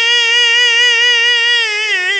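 A male qasida singer holding one long, high sung note through the sound system, with a slow vibrato that wavers more near the end.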